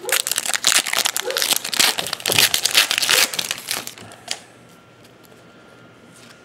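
Foil wrapper of a 2011 Playoff Contenders football card pack being torn open and crinkled in the hands, a dense crackle for about the first three and a half seconds.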